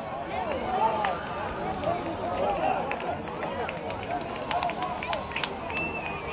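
Many children's voices shouting and calling over one another during youth football play, high-pitched and with no clear words, with a few sharp knocks.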